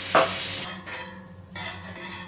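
Beef horumon skewers sizzling in sweet tare sauce on a flat steel griddle, with metal spatulas stirring and scraping across the plate. The sizzle drops to a fainter, patchy hiss about two-thirds of a second in.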